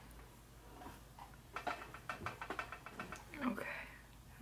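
A quick, faint run of small wet clicks as fingertips press and slide a soaked, slippery sheet mask onto the nose, lasting about a second, starting about a second and a half in.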